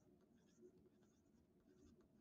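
Faint scratching of handwriting on lined paper, a few small strokes and ticks, barely above near silence.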